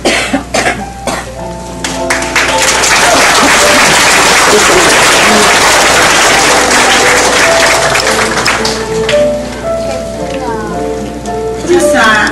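A congregation applauding: scattered claps at first, swelling after about two seconds into loud, sustained applause that fades out near the end. Music of held notes plays underneath, and a voice comes in as the applause dies away.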